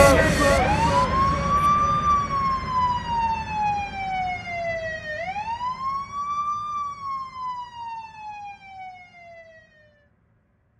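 Police siren wailing in two slow cycles, each rising quickly and then falling for several seconds, with the second rise about five seconds in. It fades away near the end.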